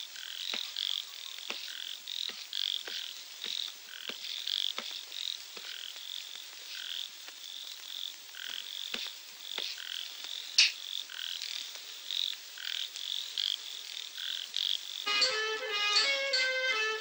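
Night ambience of frogs calling in short repeated chirps, several a second, with one sharp click about ten and a half seconds in. Instrumental music comes in near the end.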